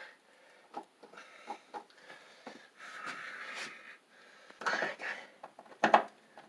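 A man breathing heavily and wheezily while bent over close work, with a few light clicks of a screwdriver on a wall switch and its mounting screws. A short, louder noise comes near the end.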